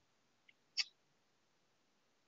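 Near silence, broken once a little under a second in by a brief, sharp click-like sound.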